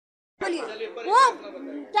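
Dead silence for about half a second at an edit, then voices talking over one another, with one voice rising and falling sharply in pitch about a second in.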